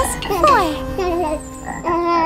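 Cartoon frog croaking sound effects: a few quick croaks that fall in pitch, strongest in the first second.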